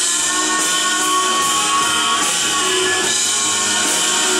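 Live band music played loud and steady on drums, keyboard and electric guitar, with one long held note through the first half.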